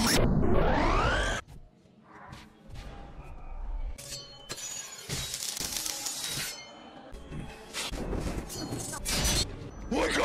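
A car window's glass smashing with a loud crash that ends about a second and a half in. Later, quieter, a metal blade glove scrapes along metal pipes, throwing sparks, among scattered clanks and knocks.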